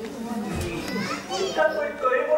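Only speech: stage actors' voices in an animated exchange in Bengali.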